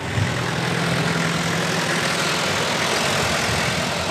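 A van's engine idling steadily with a low, even hum.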